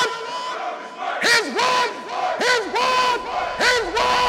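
Men's voices shouting in short calls that rise and fall in pitch, several overlapping, over a steady held tone.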